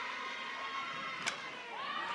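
Ballpark crowd murmur, with one sharp crack of a softball bat hitting the ball about a second and a half in, an infield pop-up. Crowd voices rise near the end.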